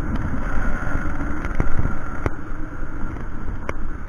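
Two-stroke 50 cc engine of a 1992 Aprilia Classic 50 Custom moped running steadily at cruising speed, mixed with wind rushing over the microphone.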